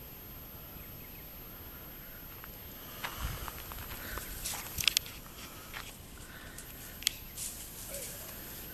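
Footsteps and rustling through dry grass, leaf litter and dead bracken, starting about three seconds in, with a few sharp cracks and snaps about five seconds in and again near seven seconds.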